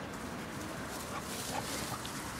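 A dog making a few faint, short sounds from about a second in, over steady outdoor background noise and some rustling.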